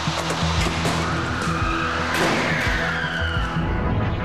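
Background music with sustained low notes, overlaid by a loud noisy screech that swells sharply about two seconds in and slides down in pitch over the next second and a half, like tires skidding in a crash-test montage.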